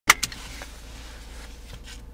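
Two sharp clicks right at the start of a dashcam recording, then a steady low hum inside a car cabin.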